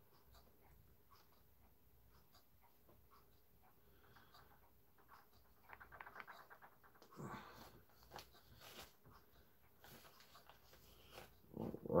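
Faint small clicks and scrapes of a screwdriver working a tight screw on a Hermle 1161 clock movement, with a few short strained breaths in the second half as the screw refuses to turn.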